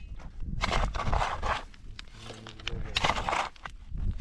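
A shovel scraping through dry, stony soil and tipping it around the foot of a wooden post. There are two rough scrapes, about a second in and about three seconds in, with a brief voice between them.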